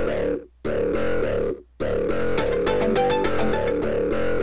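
Playback of several music loops layered together, each in its own key, so that they clash out of key with one another. The music drops out briefly twice in the first two seconds, then plays on.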